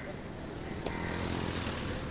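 Low, steady rumble of a motor vehicle running in street ambience, with a couple of faint clicks.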